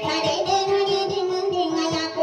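Music: a high voice singing a held, wavering melody over accompaniment with a steady low beat of about five pulses a second.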